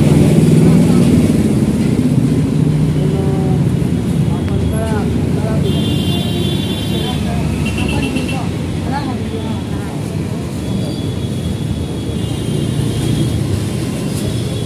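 Busy roadside street-market ambience: people's voices talking over a steady rumble of traffic, with short high-pitched tones twice.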